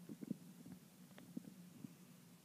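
Near quiet room tone: a faint, steady low hum with a few soft clicks and small knocks.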